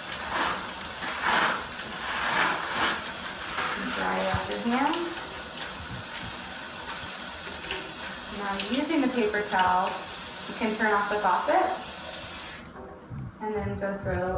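Paper towel pulled from a wall dispenser with a few sharp rustles, then hands being dried, over a steady hiss that cuts off suddenly near the end. Short indistinct voice phrases come in a few times.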